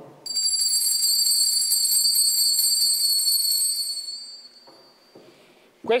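Altar bells (sanctus bells) rung at the elevation of the chalice, marking the consecration: a bright, high jingling ring that starts suddenly, holds for about four seconds and then fades away.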